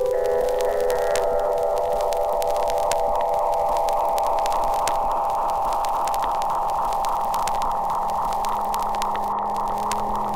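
Electronic music ending on a long held synthesizer drone, a steady chord of several tones, with scattered faint clicks.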